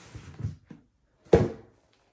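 Cardboard shoebox set down on a wooden table with a single sharp thunk about a second in, after a few light knocks as it is moved.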